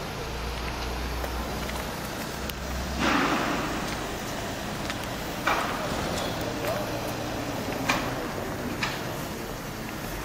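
Outdoor background noise with wind buffeting the microphone, a louder rush of noise about three seconds in, and a few light clicks later on.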